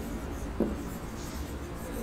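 Marker pen writing on a whiteboard: a faint rubbing of the felt tip as a word is written out.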